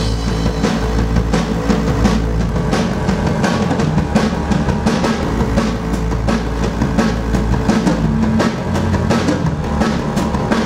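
Live rock band playing: a drum kit's kick and snare drive a fast, steady beat over a deep sustained bass line.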